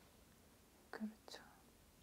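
Near silence in a small room, broken about a second in by two short, faint, breathy vocal sounds from a person.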